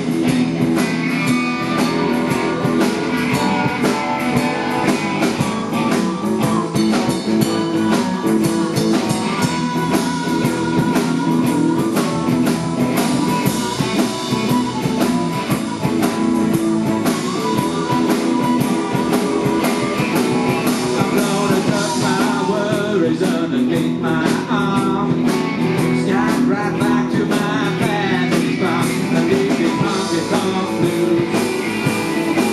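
Live blues band playing a blues number, with lead and rhythm guitars, continuous and steady in level.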